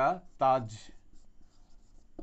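A short spoken word at the start, then a felt-tip marker writing on a whiteboard: faint, irregular scratchy strokes as letters are written.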